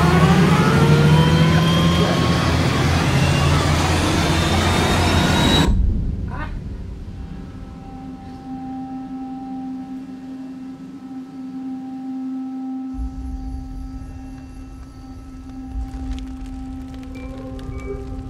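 Film trailer soundtrack: a loud noisy rush with rising tones that cuts off suddenly about six seconds in, followed by a low, steady drone of suspense score.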